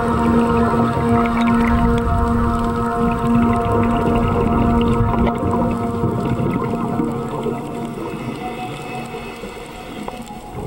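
A motor's steady hum with several overtones, heard underwater over a rumbling wash of water noise. It fades somewhat in the second half.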